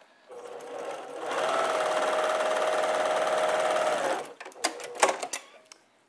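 Baby Lock sewing machine stitching a short seam: it starts slowly, speeds up to a steady whir after about a second, and stops after about four seconds. A few light clicks follow.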